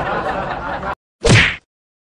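A cartoon whack sound effect: one short, sharp hit with a falling tone, about a second and a quarter in.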